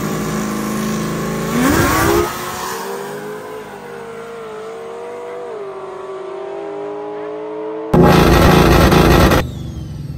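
Drag cars holding revs at the starting line, then launching with a sharp rise in engine pitch about two seconds in; their engine notes then fade away down the track, stepping down with gear changes. Near the end a sudden, very loud rush of noise lasts about a second and a half and cuts off abruptly.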